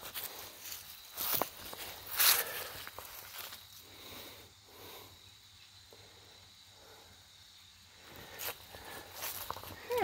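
Footsteps and rustling in grass strewn with dry leaves. There are sharper crunches about one and two seconds in, a few lighter ones after that, and a quieter stretch late on.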